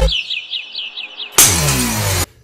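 A small bird chirping in a quick repeated series of high notes, played from the music video's soundtrack. About 1.4 s in, a sudden loud crack of glass as a power drill is driven into the camera glass.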